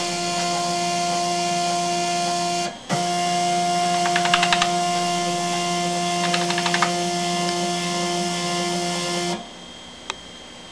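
Stepper motors of a DEGEM robot trainer running with a steady whine that drops out briefly about three seconds in, then resumes. Two short runs of rapid clicking come midway. The whine cuts off suddenly near the end.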